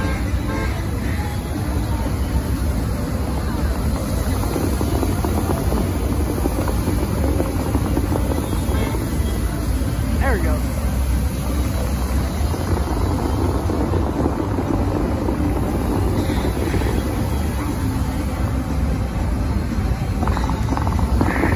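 Fountain-show water jets spraying and falling back into the lake in a steady, dense rush. Music from the show's speakers and the voices of a crowd sound under it.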